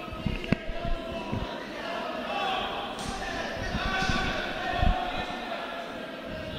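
Hall ambience at an amateur boxing bout: indistinct shouting voices from the spectators and corners. Several dull thuds come from the boxers in the ring, a cluster in the first second and a half and a louder one about five seconds in.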